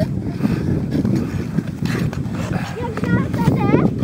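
Fast skating on lake ice: a steady low rushing and scraping of skate blades, with wind on the microphone. Near the end come a few high cries that glide up and down.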